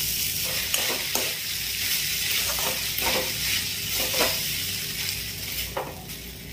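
Washed little millet poha sizzling in hot oil with vegetables in a metal kadai, while a perforated spatula stirs it in, scraping and knocking against the pan about half a dozen times.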